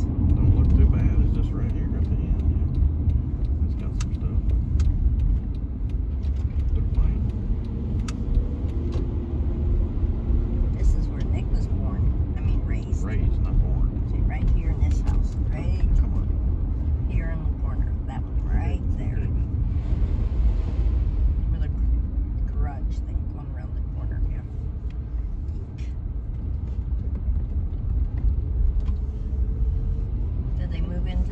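Road and engine noise inside a moving car's cabin: a steady low rumble.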